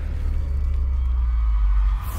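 Intro logo-reveal music: a steady deep bass drone with faint thin high tones above it.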